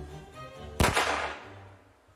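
A single shot from a modern black-powder percussion replica of a Deringer pistol: one sharp crack a little under a second in that rings out and fades over most of a second, with background music underneath.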